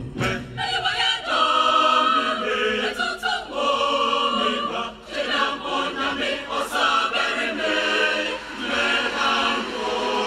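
A large mixed choir of men and women singing in harmony, holding full chords that shift from phrase to phrase. A few sharp knocks sound over the voices near the start and again about three seconds in.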